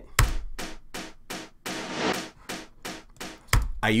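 A baroque percussion sample playing back as a layer on a synth part: a quick, even run of short, crisp hits, about five a second, with a deep thump at the start and again just before the end. It is meant to give the synth's attack more snap.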